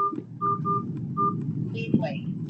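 A few short, same-pitched electronic beeps at uneven spacing over a steady low rumble of background noise.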